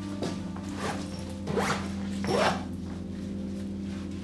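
Zipper on a fabric backpack being pulled in several short strokes during the first two and a half seconds, the last the loudest, over quiet underscore music with held low tones.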